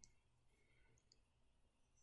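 Near silence: room tone, with two faint clicks a little under and a little over a second in.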